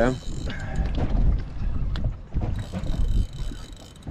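Wind rumbling on the microphone and water slapping against a small aluminium boat's hull, in uneven low surges.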